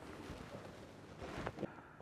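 Faint outdoor background noise, a light even hiss of wind on the microphone with a few soft low sounds, cutting off suddenly just before the end.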